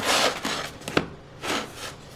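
A crusty baguette handled on a wooden cutting board: the crust rasps and crackles against the board in a few short bursts, with one sharp click about a second in.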